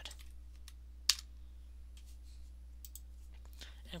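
A few scattered clicks from a computer keyboard and mouse, one sharper click about a second in, over a low steady hum.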